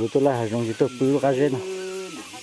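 A person talking, then a steady low buzz near the end, like a fly passing close. Behind it a high call that falls in pitch repeats about once a second.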